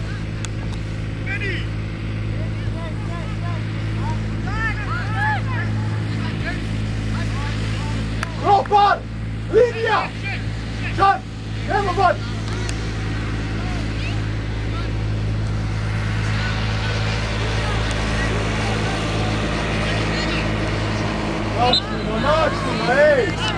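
Voices shouting and calling across a football pitch during play, with a few brief calls early on and a run of loud shouts in the middle. A steady low hum runs underneath.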